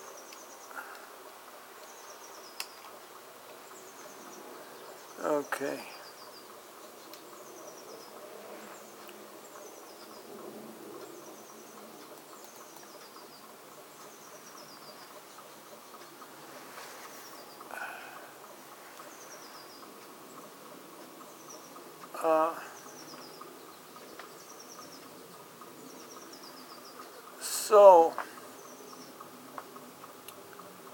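Faint, short high chirps, each falling slightly in pitch, repeating about once a second in an insect-like rhythm over quiet room hiss. Short pitched voice sounds come a few seconds in, past the middle and near the end; the last is the loudest.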